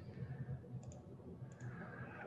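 Two faint computer mouse clicks, the first a little under a second in and the second about half a second later, over low room tone.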